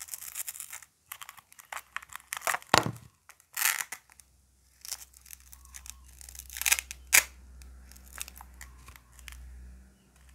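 Plastic toy cake slices being pulled apart and pressed back together at their velcro pads: a series of short rasping tears, with sharp plastic clicks and knocks. The loudest come about three seconds in and about seven seconds in.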